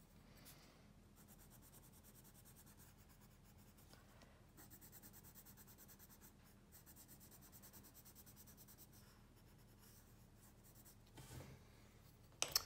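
Colored pencil scribbling back and forth on sketchbook paper, filling in a shape with fast, even strokes, faint throughout. The strokes pause briefly about four seconds in and die away a couple of seconds before the end.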